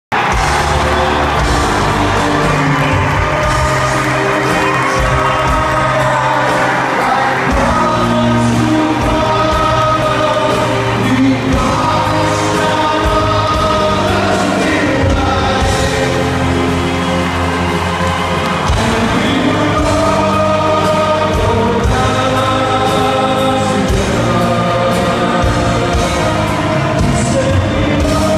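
Live rock band playing while a large group of voices, sailors joining the band on stage, sing together in chorus. The music is continuous and loud.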